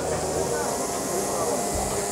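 Steady hiss with indistinct voices murmuring in the background, and a brief low thump near the end.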